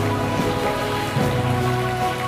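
Soft background keyboard music of sustained chords, with the bass note changing to a new pitch about halfway through.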